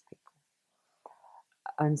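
A woman's speech breaks off into a short pause filled by a soft in-breath, then she starts speaking again near the end.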